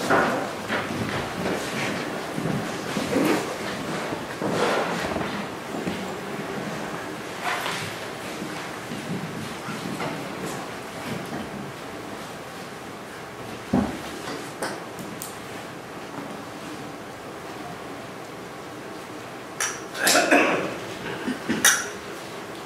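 Lecture-hall room noise while a projected video plays silently: faint muffled voices and rustling, a single sharp knock about two-thirds of the way through, and a brief louder noise near the end.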